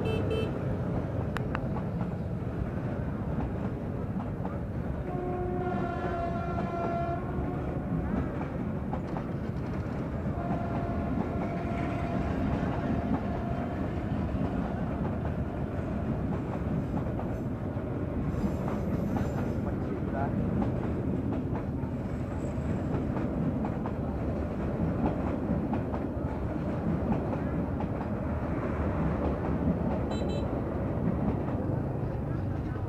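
Passenger coaches of a diesel-hauled train rolling past at close range: a steady rumble of wheels on rails. A horn sounds twice, each blast about two to three seconds long, about five and ten seconds in.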